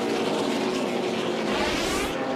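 NASCAR Cup stock cars' V8 engines, the pack running together with the pitch slowly falling as the cars back off through the wreck, and one car swelling past close by near the end.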